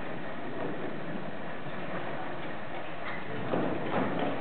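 Hall room noise with scattered soft knocks and shuffling as young string players handle their instruments and chairs on stage; no music is playing.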